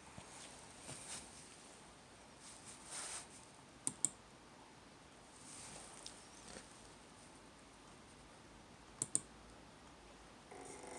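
Two quick double clicks of a computer mouse button, about five seconds apart, over faint handling rustle: gas-level buttons being clicked in roasting-control software to send a gas valve setting.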